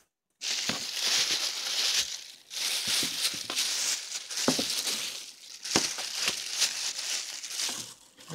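Tissue paper crinkling and rustling in irregular bursts as a cardboard shoe box is opened and the wrapping around the shoes is pulled back, with a few light knocks from the box. It starts about half a second in.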